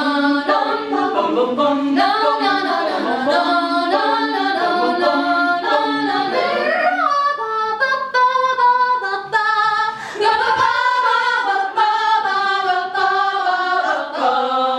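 A small group of young women singing a cappella in close harmony. For the first half, a low held line sits under moving upper voices; about seven seconds in, the voices slide upward into higher, held chords with short breaks between them.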